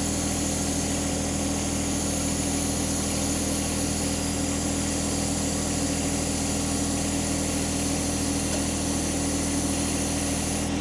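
Tractor engine running at a steady speed with an even hum and hiss, as the load is applied to a shelf bracket in a strength test.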